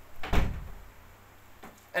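Wooden door being handled: one dull thump early on, then a faint click near the end.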